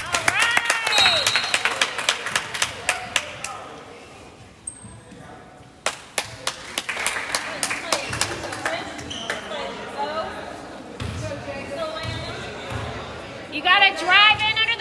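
Basketball game sounds in a gym: a basketball bouncing on the hardwood court and other sharp knocks, in clusters near the start and again about six seconds in, over the voices of spectators.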